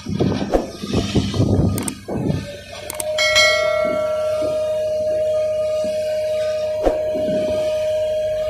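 Irregular rumbling machinery noise from the piling work, then about three seconds in a click and a bell ding from a subscribe-button sound effect, followed by a steady ringing tone that holds to the end.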